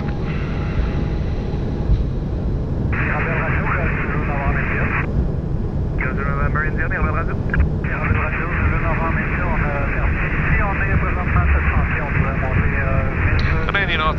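Airbus A220 cockpit during the takeoff roll: a steady low rumble from the Pratt & Whitney geared turbofans at takeoff thrust and from the wheels on the runway. Radio voices come in over it about three seconds in and run on, with a short break, until near the end.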